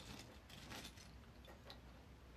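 Faint, sparse clicks of small plastic Lego pieces knocking together as fingers pick through a loose pile.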